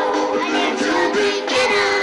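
A group of children singing a song together, their voices holding sustained notes and gliding between them.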